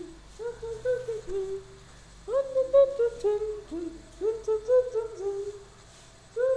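A voice humming a slow, gentle tune to a baby, lullaby-style: short notes that each slide up slightly, in two phrases with a brief pause just under two seconds in.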